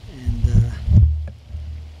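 Indistinct, untranscribed speech in the first second, then a steady low rumble from the camera being handled and set down.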